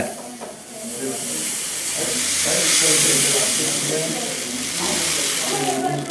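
Fine gold concentrate sliding off a folded sheet of paper onto a metal weighing pan: a steady sandy hiss that swells toward the middle and then eases.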